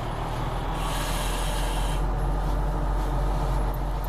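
Breath drawn through a firefighter's self-contained breathing apparatus face mask: the regulator gives a hiss of air lasting about a second, starting near the start, over a steady low rumble.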